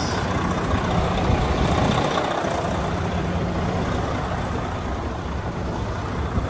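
Detroit DD13 inline-six diesel engine of a 2013 Freightliner Cascadia idling steadily.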